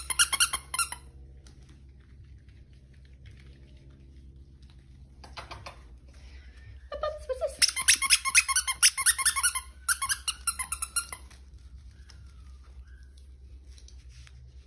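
Squeaker inside a plush dog toy squeezed over and over, in quick runs of high squeaks: a short burst at the start, a brief one about five seconds in, and a long run from about seven to eleven seconds.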